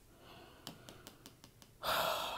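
A woman draws a sharp, audible breath in near the end, just before she speaks again, after a few faint clicks in a quiet pause.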